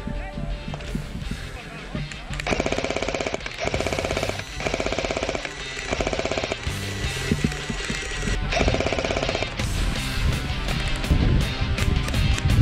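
G&G MG42 airsoft electric machine gun firing several bursts of rapid full-auto fire, each about a second long with short pauses between, over background music.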